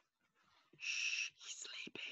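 A man whispering close to the microphone, in two short phrases starting a little under a second in.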